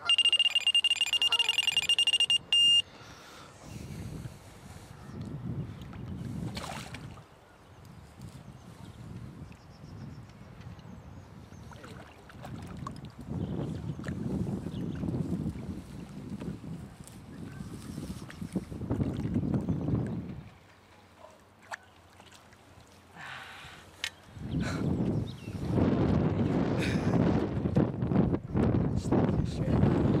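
A single steady, high-pitched electronic tone for nearly three seconds, cutting off sharply: a carp fishing bite alarm sounding as a fish takes line. After it, gusts of wind rumble on the microphone.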